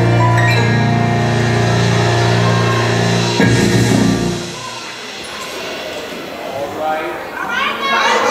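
Gospel choir and band holding a final chord, cut off with a sharp hit about three and a half seconds in; the music dies away and the audience cheers and shouts, growing louder near the end.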